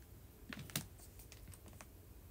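Faint, light clicks of typing on a device: a quick cluster of clicks about half a second in, the loudest among them, then a few lighter clicks spaced out over the next second.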